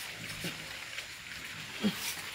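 Quiet scraping and scuffing of dry soil as cassava roots are dug out by hand, with a short low grunt about half a second in and a brief voice sound near the end.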